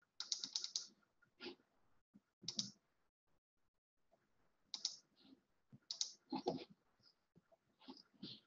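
Faint, irregular computer keyboard typing and clicks: a quick run of keystrokes at the start, single clicks, a pause about halfway, then a few more.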